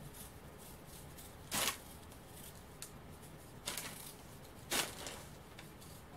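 Vegetable peeler scraping skin off a raw potato in hurried strokes: several short, separate scrapes, the clearest about one and a half, three and a half and nearly five seconds in.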